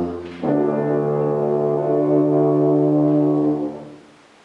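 Tuba played solo: a low note dies away at the start, then, about half a second in, one long held note that fades out just before the end.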